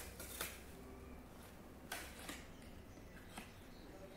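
Faint crinkling and a few sharp crackles of a Kinder Ovo's foil wrapper being torn off by hand.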